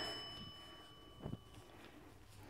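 A quiet room with a thin, high ringing tone that fades away within about two seconds, and one faint soft knock just past a second in.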